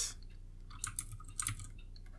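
Faint taps and scratches of a stylus on a graphics tablet while writing by hand, a small cluster of light clicks about a second in.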